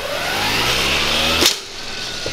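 The handheld lawn-mower-blade weapon's electric motor spins up with a rising whine. About one and a half seconds in, the blades smash into a pumpkin and clip the wooden post beneath it with a sharp crack, and the motor sound stops at once.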